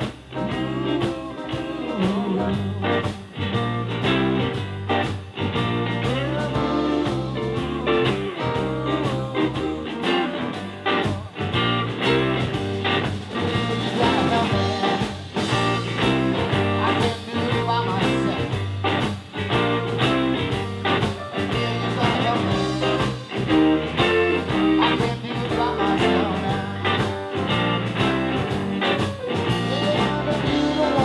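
Live blues band playing: electric guitars over bass and drum kit, with a steady beat.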